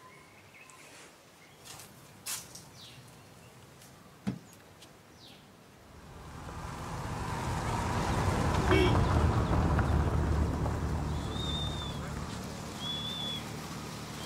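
An old saloon car's engine, its rumble swelling over a few seconds and then easing off as the car drives by on a dirt road. A couple of short clicks come before it, and two bird chirps near the end.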